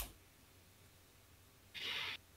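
A short click, then faint room tone, and near the end a short breath breathed out into a microphone.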